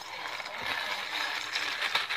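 Butter crackers crumbling and crunching into a stainless steel mixing bowl as they are poured in and crushed by hand: a dense, rapid crackle.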